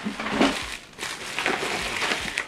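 Packaging rustling and crinkling in irregular bursts as a hand rummages in a meal-kit box, handling its foil insulation liner and lifting out a plastic ingredient bag.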